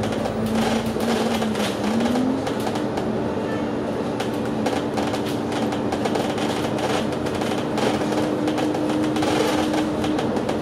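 Inside a moving double-decker bus: a steady drive-train drone with the bus body rattling throughout. The drone's pitch dips and then climbs to a higher steady note about two seconds in.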